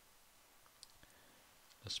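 Near silence, room tone, with one faint short click a little under a second in. A voice begins just before the end.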